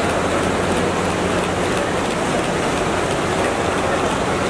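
Busy airport terminal ambience: a steady, dense wash of crowd and hall noise with a faint low hum underneath.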